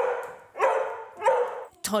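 A pet dog barking three times in quick succession, each bark drawn out to about half a second.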